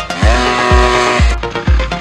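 Electronic dance music with a steady kick drum. Over it a motocross bike's engine note drops in pitch and then holds for about a second before cutting off.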